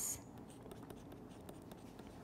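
Faint scratching and tapping of a stylus writing on a tablet screen, over low room hiss.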